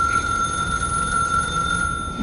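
An electronic beep: one steady high tone held for about two seconds, then cut off.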